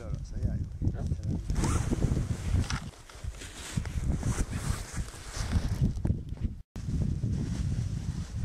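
Wind rumbling on the microphone outdoors, with rustling of clothing and movement in snow. The sound cuts out for a moment near the end.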